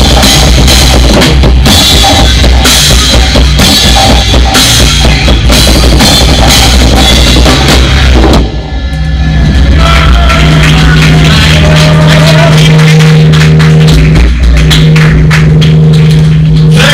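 Live prog metal played on a drum kit with bass drum and cymbals, heard close up over the rest of the band. About eight and a half seconds in the music breaks off briefly, then comes back with a long held low note under the drums.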